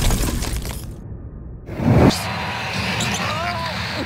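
Logo intro music fades out, and a rising whoosh ends in a loud hit about halfway through. Then the sound of a basketball game broadcast comes in: arena crowd noise and court sounds.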